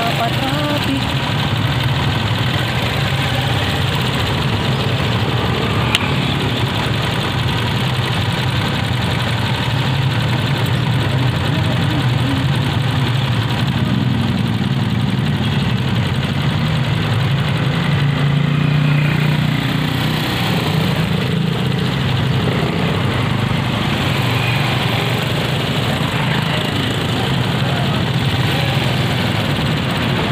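Motorcycle engine idling and running at low speed in slow street traffic, a steady low engine note that swells briefly about two-thirds of the way in.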